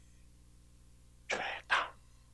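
After a near-silent pause, a man clears his throat in two short, rough bursts about a second and a half in.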